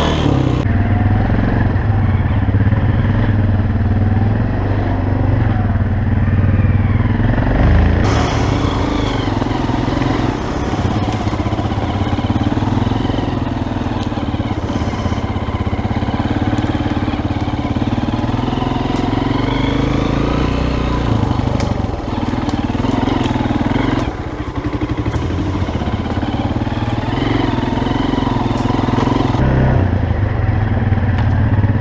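Honda CRF230F dirt bike's air-cooled single-cylinder four-stroke engine running on a trail ride, its note rising and falling with the throttle.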